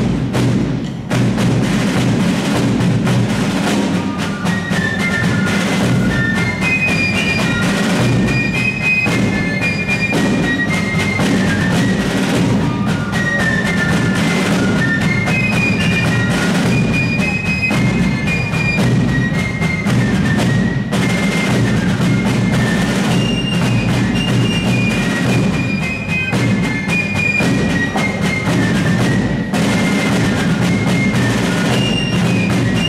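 Fife and drum corps playing a march: rope-tension snare drums and a bass drum beat steadily, and a few seconds in the fifes come in with a high melody over the drums.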